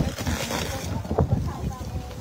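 Wind rumbling on the microphone, with faint voices of people nearby and a brief knock about a second in.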